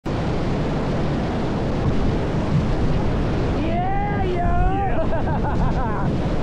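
Whitewater rapids rushing loudly around a raft as it runs through the waves. A little past halfway, people on the raft start shouting and whooping over the water.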